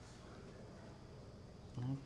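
Quiet room tone with a faint steady buzz, and a short sound from a man's voice just before the end.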